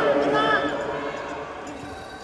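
A man's voice briefly at the start, then quieter arena sound with a few soft thuds of footwork on the competition carpet.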